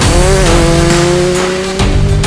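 Volkswagen Polo rally car's engine at high revs, its note dipping briefly about half a second in, then climbing slowly until it cuts off near the end, mixed with background music.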